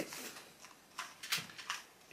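A small 2x2 plastic puzzle cube being twisted by hand to scramble it, giving a few soft, separate clicks.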